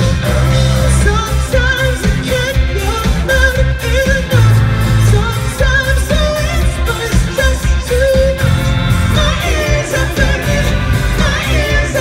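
Live pop-rock band playing at full volume: a male lead vocal sung over electric guitar, bass and a drum kit, heard from the crowd.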